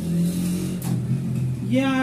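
A motor vehicle's engine running, its low pitch stepping down over the first second and a half.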